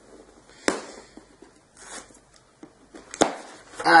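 A cardboard box being torn open by hand without scissors: faint tearing and rustling, with two sharp cracks, one under a second in and another about three seconds in.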